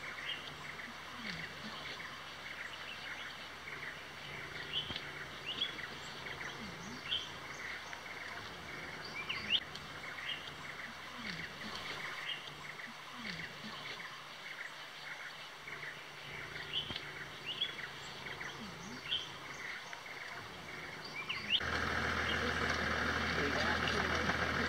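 Birds chirping: many short rising chirps come at irregular intervals over a faint steady background. Near the end a steady rushing noise comes in suddenly and keeps on under the chirps.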